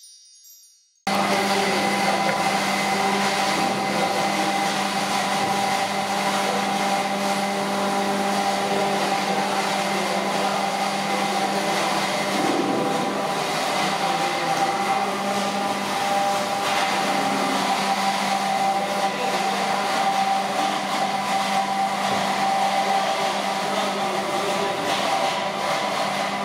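Steady machine hum with a few constant tones in it, like an electric fan or motor running, starting about a second in after a brief silence.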